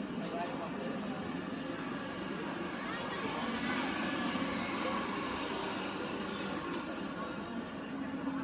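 Steady background hubbub of many voices, with no single clear speaker standing out.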